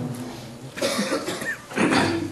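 Two short coughs about a second apart, after the last held note of a chanted Sanskrit prayer fades out.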